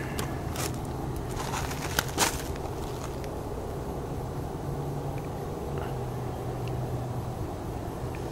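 Steady low engine hum, with a few light knocks and a short scrape about two seconds in.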